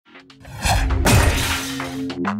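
A glass-shattering sound effect over electronic intro music: a loud crash with a deep boom about a second in that fades out over most of a second.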